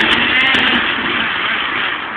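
Food processor motor running at speed, chopping dried bread into breadcrumbs, with a few sharp ticks from the bread pieces early on.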